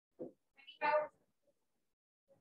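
A soft thump, then one short, high-pitched, meow-like cry about a second in.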